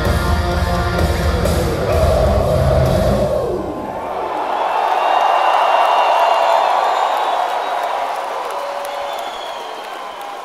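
Heavy metal band with distorted guitars and drums playing the last bars of a song, which stops about three and a half seconds in. A large crowd then cheers, swelling and slowly fading toward the end.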